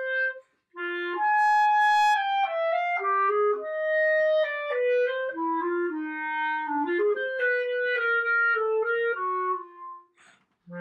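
Selmer Paris Présence B-flat clarinet of grenadilla wood, played solo in a melodic passage of changing notes, with a brief breath pause about half a second in.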